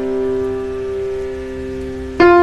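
Background piano music: a held chord sustaining and slowly fading, with no new notes struck.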